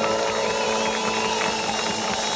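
Live rock band playing a slow ballad, recorded from the crowd: a sustained chord with a wavering high melody line above it over crowd noise.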